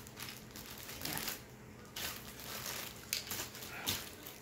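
A clear plastic bag of small parts crinkling and rustling as it is handled, with a few sharper clicks near the end.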